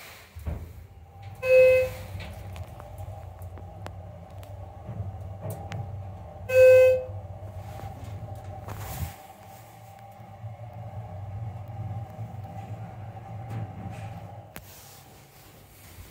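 Schindler 330A hydraulic elevator car travelling down with a steady low hum that stops near the end as the car comes to rest. Two short electronic chimes sound, about five seconds apart, and are the loudest sounds.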